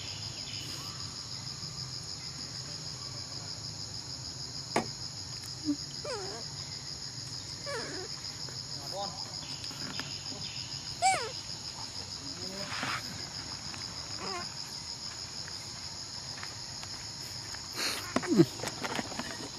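Steady, high-pitched insect chorus with a fast pulsing shimmer. A few short chirping calls come and go over it, and there is a single click about five seconds in.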